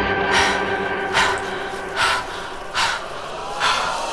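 A person breathing hard in short, heavy breaths, about one a second, over a soft held music tone.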